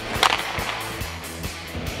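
A hockey slap shot: the stick cracks once against the ice and puck about a quarter second in, over background music.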